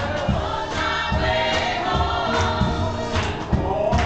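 Gospel church choir singing with keyboard accompaniment, over a steady low beat of about two pulses a second.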